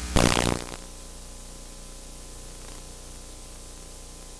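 Analog videotape playback noise: a short loud burst of static about half a second long near the start, then steady hiss with a low mains hum.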